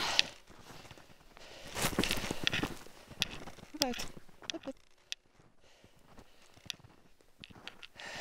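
Footsteps trudging through deep snow: irregular soft crunching steps, heaviest in the first half and quieter after about five seconds. A brief falling voice-like sound comes about four seconds in.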